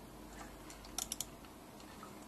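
Faint clicking from a computer's keyboard and mouse being worked: a few light ticks, then a quick run of four sharp clicks about a second in.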